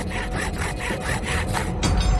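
Saw cutting through wood in quick back-and-forth strokes, about five a second, standing for the ice axe being cut down to size. The sawing stops shortly before the end.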